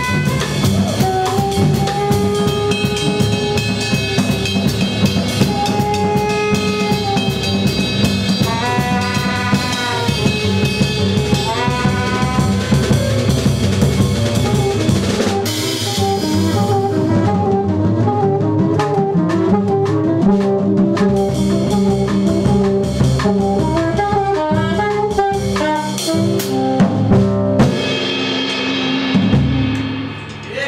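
Live jazz trio playing: alto saxophone melody over upright double bass and drum kit. About halfway through, after a cymbal crash, the cymbals drop out and the saxophone plays quick runs over the bass and lighter drums, with the full kit coming back in shortly before the tune ends.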